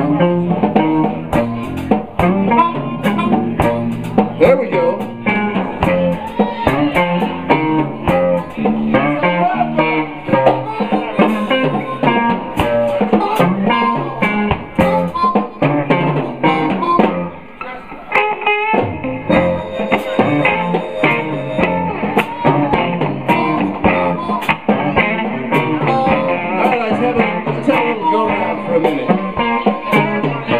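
A live electric blues band jamming in F: electric guitars over bass and drums, with harmonica. The music briefly drops in loudness a little past halfway.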